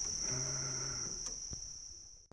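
Insects trilling in the bankside vegetation: one steady, high-pitched drone that fades out near the end.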